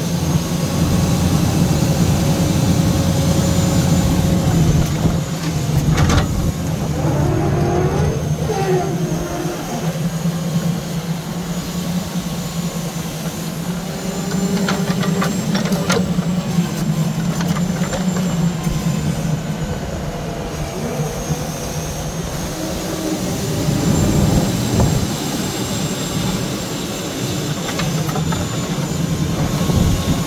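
Log truck engine running steadily while its hydraulic log loader's grapple unloads a load of poles. Hydraulic whines rise and fall, and there are a couple of sharp clunks from the logs, about six and sixteen seconds in.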